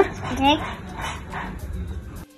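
Speech only: a toddler's high voice answering and an adult saying "okay", with short high-pitched vocal sounds near the start.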